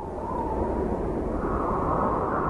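Rushing, wind-like whoosh sound effect: a steady noise without any tone, dipping briefly at the start and then swelling back up.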